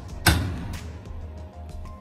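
Oven door being shut: one sharp thud about a quarter second in, over background music.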